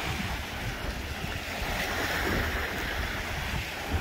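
Small surf washing up a sandy beach, a broad wash that swells in the middle, with wind rumbling on the microphone.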